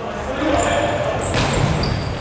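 Futsal play on an indoor court: players' voices calling out, high squeaks of sneakers on the hall floor, and a sharp knock of the ball being struck about one and a half seconds in.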